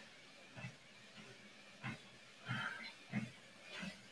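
Soft footfalls of a slow walk on a folding treadmill's belt, a low thud about every two-thirds of a second, with a faint breath about two and a half seconds in.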